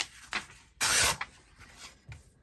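A loose sheet of printed paper rustling and sliding against a cutting mat as it is picked up and turned over, with one louder swish of about half a second about a second in.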